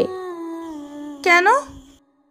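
A woman's voice humming a long held note that sinks slightly in pitch, then a short hum that dips and rises, fading out at the end.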